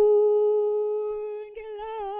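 A male singer's voice holding one long, steady note with no accompaniment, then moving to a new note with a wavering vibrato about one and a half seconds in.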